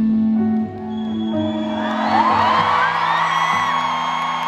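Live concert music through an arena PA, a sustained held chord that thins out just under a second in. From about two seconds in, the crowd whoops and screams over it.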